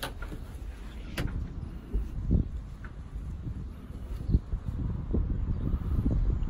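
Low, uneven rumble of wind buffeting the phone's microphone, with handling noise as the phone is swung around. A sharp knock comes at the start and another about a second in.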